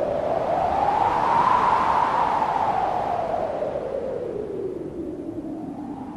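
Electronic whoosh sweep opening a dance track: a noisy swish that rises in pitch for about a second and a half, then slowly falls and fades.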